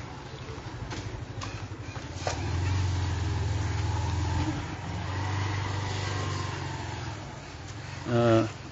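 A motor vehicle engine running close by: a low, pulsing rumble that swells about two seconds in, dips briefly around the middle, then carries on before fading near the end.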